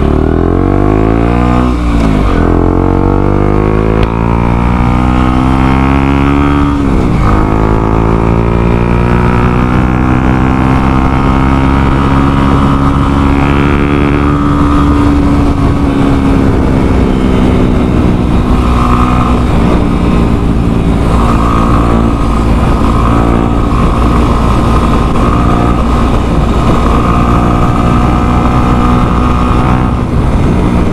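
Motorcycle engine accelerating through the gears: its pitch climbs and drops at two upshifts in the first several seconds, rises again, then holds a steady cruise.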